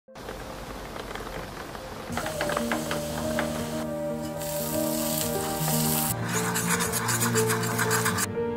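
Soft instrumental music with held notes comes in about two seconds in. Over it, bread frying in a pan sizzles, and near the end there is a quick, rapid rubbing of a wooden spatula in the pan.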